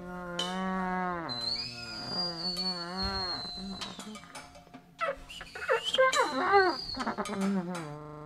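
Experimental electronic music: a steady low drone under pitched tones that slide and bend up and down. It turns louder and busier about five seconds in, with fast gliding pitches and clicks.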